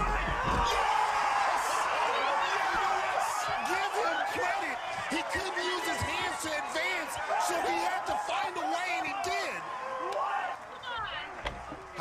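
Voices of people yelling and cheering, several at once, with a low thump about half a second in.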